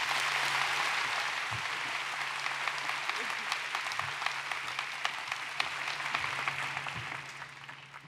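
Large audience applauding steadily as a speaker is welcomed, the clapping dying away near the end.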